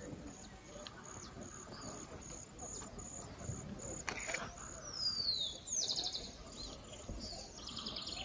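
Birds calling: a descending whistled note about five seconds in, a quick trill just after it, and more short chirps near the end. A faint high note repeats about twice a second through the first half.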